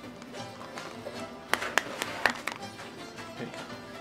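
A knife striking the skin of a pomegranate half held over a bowl, knocking the seeds out: four sharp taps in quick pairs near the middle. Background music plays steadily underneath.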